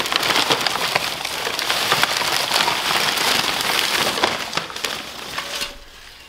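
Wrapping paper and a paper shopping bag rustling and crinkling as a ceramic ornament is dug out and unwrapped by hand; the rustling dies away near the end.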